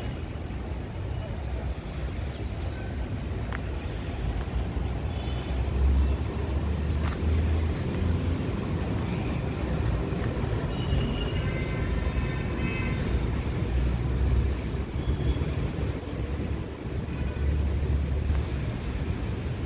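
Outdoor street ambience: a steady rumble of road traffic, with wind buffeting the microphone in gusts and faint voices in the background.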